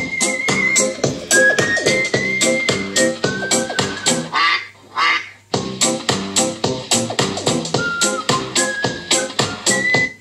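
Electronic ringtone-style music played through two linked Coloud Bang portable speakers: a fast, even beat under a high melody, with a short break near the middle.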